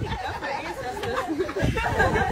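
Several women's voices chattering over one another in casual, overlapping talk, with a short low rumble near the end.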